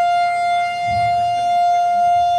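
Electric guitar amplifier feedback: one loud, steady, high-pitched tone that does not waver, with faint low rumbling about a second in.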